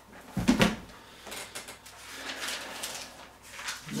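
Paper Bible pages being turned by hand, a series of short rustles and flicks. About half a second in there is a thump as the heavy book is set down on the desk.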